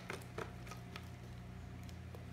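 Quiet room tone with a low steady hum and a few faint light clicks in the first half second.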